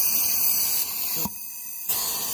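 Shop compressed air hissing steadily out of the inlet side of a 2005–2007 6.0L Powerstroke high-pressure oil pump on a bench test. The hiss briefly drops away about a second and a quarter in, then returns. The air escaping through the pump is the sign of a faulty pump that is not building high-pressure oil.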